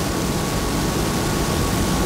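Steady hiss of room background noise, with a faint steady high tone running through it.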